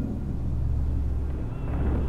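A deep, steady rumble, with faint higher tones starting to come in near the end.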